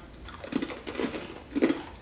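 Crunching and chewing of crispy horseradish breadsticks being bitten into, in a few irregular crackly crunches.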